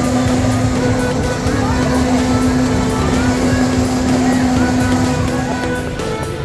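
A spinning amusement ride's machinery hums steadily under music with a regular beat. The hum stops about five seconds in.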